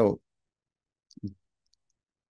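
A spoken "So," then gated silence broken about a second in by a brief mouth click and short throat sound from the speaker, with one more faint tick shortly after.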